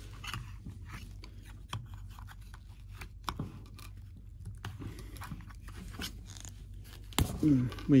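Small, irregular plastic clicks and taps of an action figure and its accessories being handled and posed, with one sharper click near the end.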